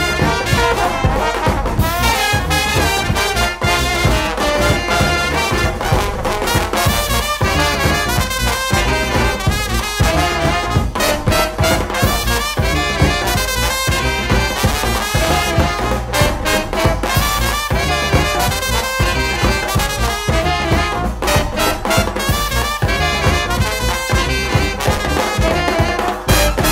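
A New Orleans brass band playing second line music live, with trumpets and trombones over a sousaphone bass line and a steady beat.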